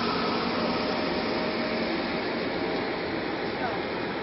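Steady outdoor background noise: an even hiss with no distinct events, with a faint brief call or voice near the end.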